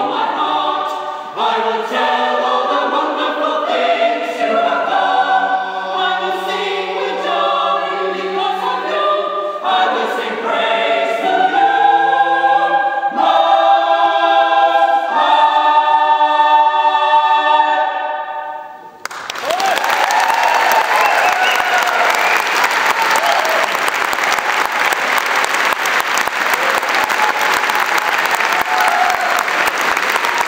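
Mixed choir singing a cappella in several parts, closing on a long held chord that fades out about 18 seconds in. Then the audience breaks into applause that goes on to the end.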